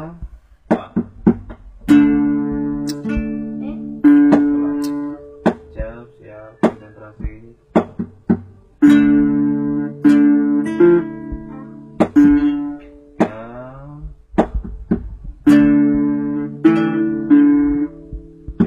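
Acoustic guitar playing chords, each struck hard and left to ring and fade, with short single plucked notes and slides between them.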